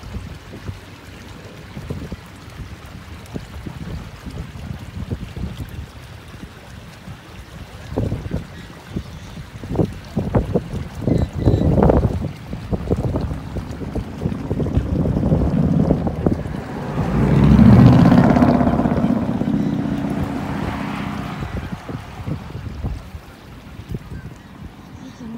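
Wind buffeting the microphone in gusts, with a road vehicle passing. The vehicle swells in from about two-thirds of the way in, is loudest a few seconds later, then fades.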